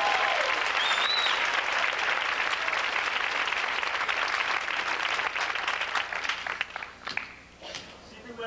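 Theatre audience applauding at the end of a musical number, with a cheer or two near the start, the clapping thinning out in the last second or so.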